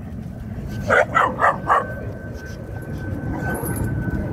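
Puppies barking: a quick run of four barks about a second in.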